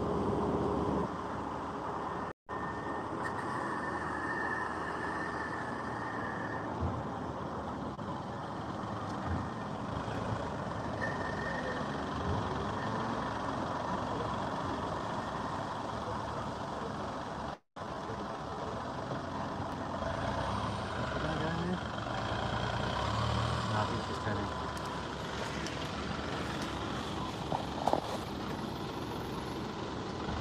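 A large SUV's engine idling and manoeuvring close by, over steady street traffic noise, with the engine rumble swelling about twenty seconds in.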